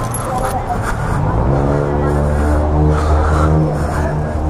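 A motor vehicle engine running at a steady pitch, coming in about a second in and holding until just before the end, with voices around it.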